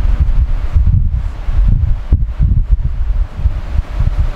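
Gusting low rumble of air buffeting the microphone, uneven and loud, with no clear tones or clicks.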